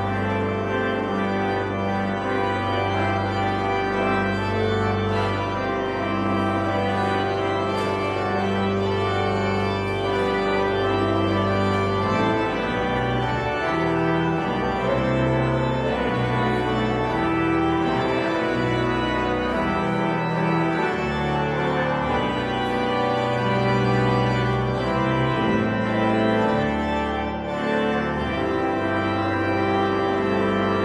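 Church organ playing slow, sustained chords over held bass notes that change every second or two.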